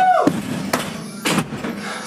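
A woman's brief "woo!", then a sofa bed going down a staircase: two heavy thuds a little over half a second apart.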